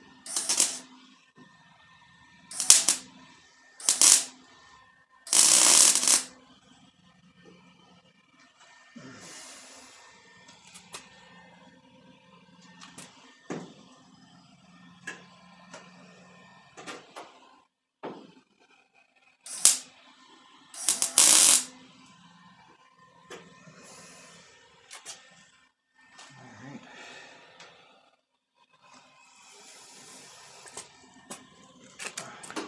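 MIG welder laying short tack and stitch welds on a sheet-steel quarter panel: six brief bursts of welding, four in the first six seconds and two more about twenty seconds in, the longest lasting about a second. Between the welds there are faint clicks and handling sounds.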